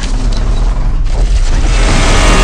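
Loud, steady rumbling noise, heaviest in the low end: a boom or rumble sound effect from the soundtrack of the animated footage.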